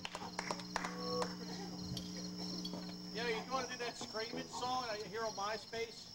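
Field crickets chirping steadily, with a low steady hum that stops partway through and faint voices talking in the background from about halfway in.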